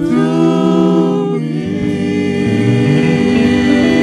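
Gospel vocal group singing in close harmony, several voices holding long sustained chords. The voices come in together right after a brief pause, and the chord shifts about a second and a half in.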